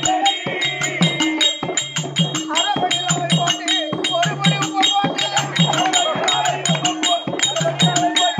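Therukoothu folk-theatre ensemble music. A hand drum plays pitched low strokes in a quick, steady rhythm, with sharp clicks on top and small hand cymbals ringing high. A wavering melody line runs above.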